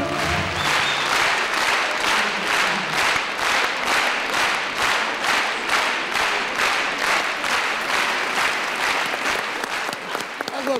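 Concert audience applauding as a song ends, the clapping falling into a steady rhythmic beat of about two to three claps a second.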